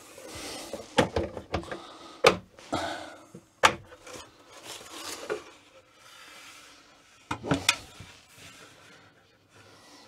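Campervan overhead locker door being handled onto its frame: wooden knocks and rubbing as the panel is pushed and shifted into place. There are several sharp knocks, the loudest about two and a half, three and a half and seven and a half seconds in.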